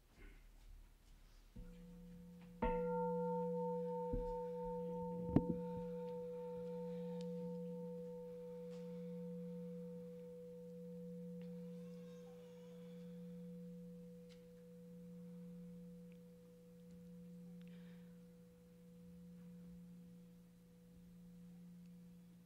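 Buddhist bowl bell struck about three seconds in, marking the start of silent meditation, and ringing on as a long, slowly wavering tone. There is a sharp knock a couple of seconds after the strike.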